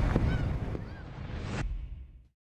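A few short honking calls, each rising and then falling in pitch, over a steady low background rumble. The sound cuts off near the end.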